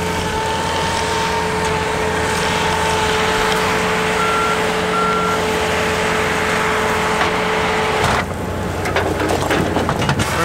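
A John Deere compact track loader working a rock-picker attachment, its diesel engine running steadily with a high, even whine over it. Two short beeps come a little over four seconds in, like a backup alarm. About eight seconds in, the sound changes abruptly.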